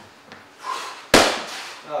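A boxing glove smacking a focus mitt once, about a second in: a hook landing on the pad, sharp, with a short ring from the room.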